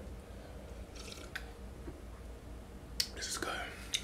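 A man drinking from a plastic cup: faint slurping and swallowing about a second in, then a sharp lip smack about three seconds in followed by a short breathy exhale.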